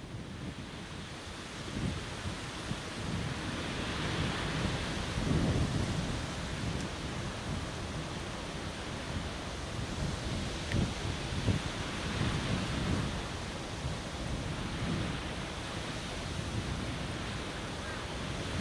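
Low, uneven rumble of a jet airliner's engines heard from far off as it lands and rolls out, mixed with gusty wind buffeting the microphone. It swells in the middle and then settles.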